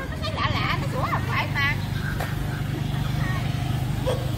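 A dog barking and yelping in several short, high calls in the first couple of seconds, over people talking and a steady low hum.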